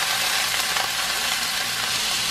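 Cooked ground beef sizzling steadily in a hot frying pan on the stove.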